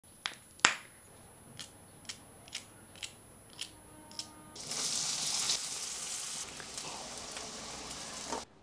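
A run of about eight crisp snaps as fresh okra pods are broken and cut by hand. About halfway through, a steady sizzle of cut okra frying in hot oil in a kadhai takes over.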